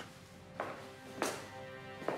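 Background score of sustained, held notes, with two light taps about half a second and a second and a quarter in.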